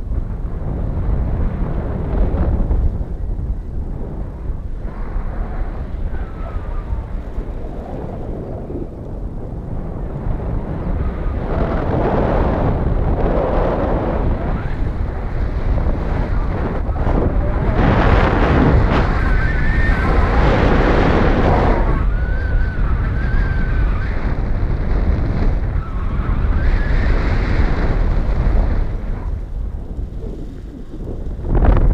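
Airflow buffeting the microphone of a paraglider pilot's camera in flight: a steady low rushing that swells in gusts, loudest about two-thirds of the way through.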